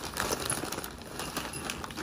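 Newspaper crinkling and rustling as it is handled and pulled open, with irregular small crackles.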